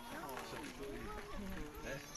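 Faint, overlapping voices of people talking, with no clear words.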